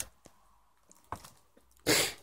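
Hands handling a graded comic slab in a clear plastic bag: light clicks and plastic crinkling, with a louder crinkle or scrape near the end.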